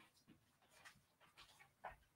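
Near silence, with faint rustling and handling noises from a person picking up and carrying a cat some way from the microphone, and one soft knock near the end.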